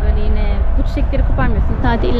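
Voices talking over a steady, loud low rumble.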